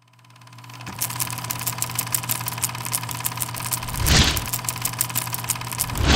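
Film projector sound effect: a steady mechanical whir with rapid, evenly spaced clicking, fading in over the first second, with a whoosh about four seconds in.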